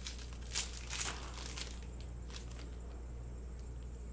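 Foil trading-card pack wrapper crinkling as it is handled and torn open. A few short rustles come in the first two or three seconds, the loudest about a second in, over a steady low electrical hum.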